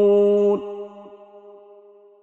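A man reciting the Quran holds one long, steady note at the close of the recitation. It cuts off about half a second in, and a reverberant tail fades away.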